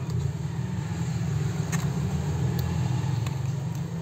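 A steady low rumble like a running motor or engine, with a few faint light clicks from the phone's metal middle frame being handled.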